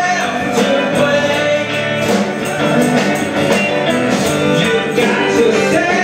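Live rock band playing loud, with a singer's voice over the instruments, as heard from the audience.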